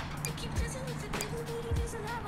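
Soft background music, with a single melody note held through the second half.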